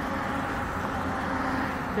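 Steady road traffic noise from cars driving past on the bridge roadway alongside.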